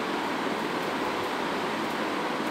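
Steady hiss of room background noise.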